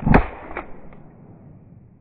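A shotgun firing once, loud and sharp, followed by a fainter second bang about half a second later.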